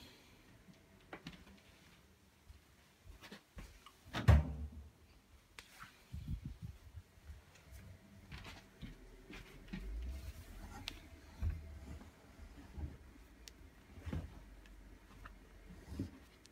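Handling noises as washed laundry is moved by hand from a front-loading washing machine into a tumble dryer: scattered soft rustles and knocks, with one louder thump about four seconds in.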